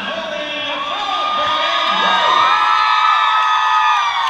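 A large audience cheering and screaming, with many overlapping high whoops that swell over the first two seconds and stay loud.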